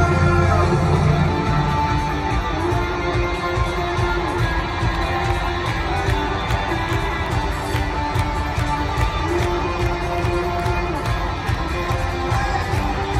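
A rock band playing live in a stadium, heard from the crowd: a guitar plays long held notes that bend in pitch over the band's continuous backing.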